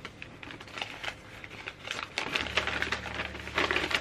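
Tissue paper rustling and crinkling as a wrapped book is unwrapped by hand, in a quick run of small crackles that gets busier in the second half.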